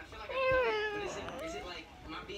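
Two drawn-out meows: the first slides down in pitch, the second rises and then holds.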